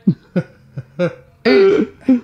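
An elderly woman laughing in a few short bursts, then a longer, louder one about one and a half seconds in.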